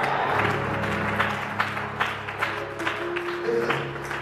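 Held instrumental chords from church music, with the congregation applauding and clapping; sharp claps come about two or three a second in the middle of the stretch.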